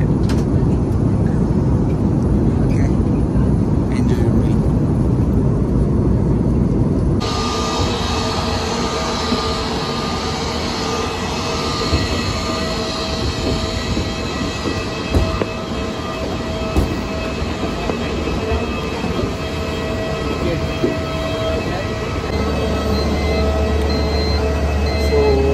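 Airliner cabin noise, a steady low rumble, cuts off after about seven seconds to the whine of a jet airliner on the apron, several steady high tones over a lower rumble. Near the end it changes to the steady low hum of an airport shuttle bus.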